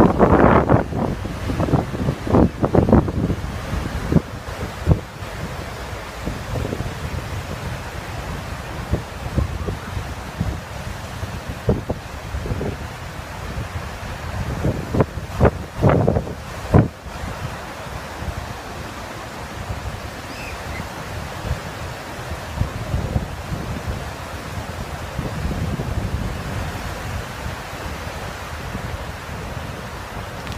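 Ocean surf breaking and washing up a sandy beach, a steady rushing wash. Wind buffets the microphone in loud gusts during the first few seconds and again around the middle.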